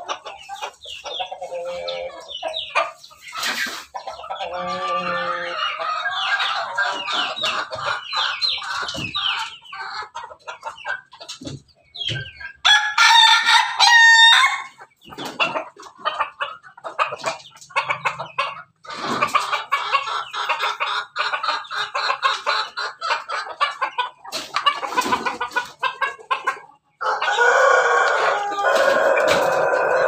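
Pelung–Bangkok crossbred chickens clucking and calling continuously. A rooster crows loudly about halfway through, and there is another loud stretch of calling near the end.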